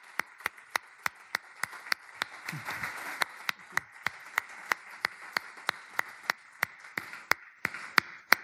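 Audience clapping in a steady rhythm, about three to four claps a second, over a steady hiss.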